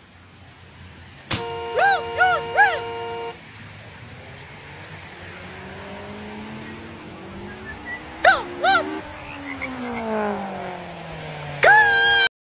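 A car horn blares for about two seconds with a dog barking three times over it. Then comes steady traffic noise with an engine's pitch rising and then falling, two more barks, and a second horn blast with a bark near the end.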